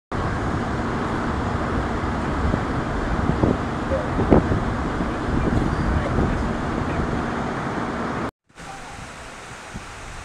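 Steady low rumble of an idling vehicle engine with a faint steady hum and a couple of light knocks; a little over eight seconds in it cuts out and gives way to a quieter steady hiss of wind.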